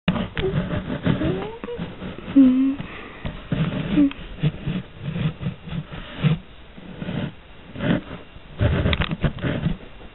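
A person's voice making short wordless sounds, with scattered knocks and rustles throughout.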